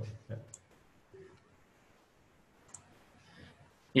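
Two faint computer mouse clicks, about half a second in and again near three seconds, over quiet room tone.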